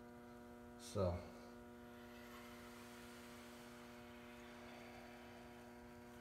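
Faint, steady electrical mains hum with a constant pitch.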